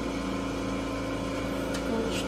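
Steady low machine hum, carrying several steady tones.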